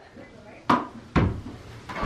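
Two sharp knocks about half a second apart: a small ball striking the wall and bouncing during a throw-and-catch game.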